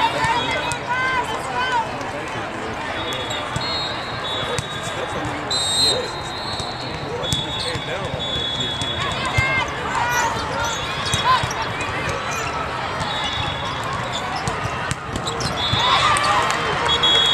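Indoor volleyball play on a sports court: sneakers squeaking and the ball being struck, over the steady chatter of a crowd in a large hall. High steady whistle tones sound several times.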